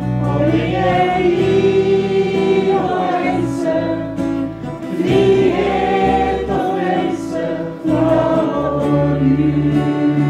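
Live church worship band playing a Norwegian praise song: several voices singing together over electric guitar and electric bass guitar.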